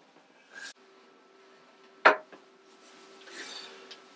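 A sharp metallic click about two seconds in, followed by a fainter tick, as the drill press's spring-returned feed handles are worked and let go.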